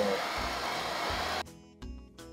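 Hand-held hair dryer blowing steadily while a pompadour is styled. It cuts off suddenly about a second and a half in, and background music begins.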